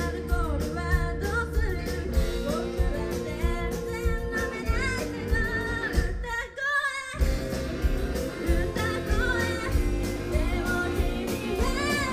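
A live rock band playing: a vocalist sings over electric guitars, bass and drums. About six seconds in the band stops briefly, for under a second, then crashes back in.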